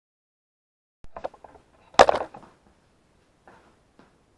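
Dead silence for about a second, then a few light clicks and one sharp knock about two seconds in: handling noises.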